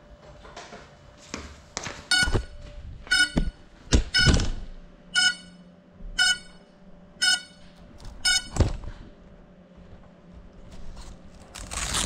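An FPV quad's buzzer sounding a row of short electronic beeps, about one a second, seven in all. Knocks and thumps of the gear being handled and set down on a hard table come in among the beeps and again near the end.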